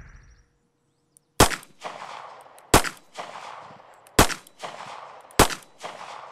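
Smith & Wesson J-frame revolver fired four times, one shot about every second and a half, each shot trailing off in a short echo.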